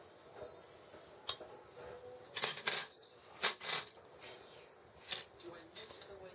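Plastic model kit parts being handled and fitted: a few sharp plastic clicks and short scraping bursts, two close together around the middle and a single sharp snap near the end.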